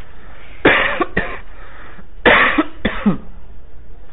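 A man coughing: two short coughs, then a second pair of coughs about a second and a half later.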